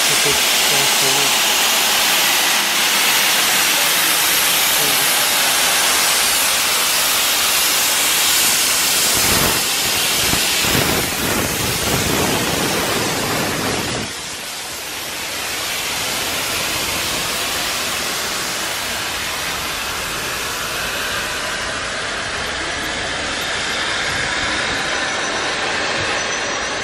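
Steam locomotive No. 30541, a Southern Railway Q class 0-6-0, passing close alongside with a loud, steady hiss of steam. About halfway through the hiss drops away suddenly as the engine goes by, leaving the steady rumble of its carriages rolling past.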